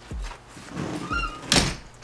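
A few soft thumps, then a brief high squeak just after a second in, followed by a single sharp knock about one and a half seconds in.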